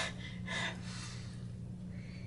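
A man's quick breathy gasps, one at the start and another about half a second in, reacting to a sip of a strong tequila margarita.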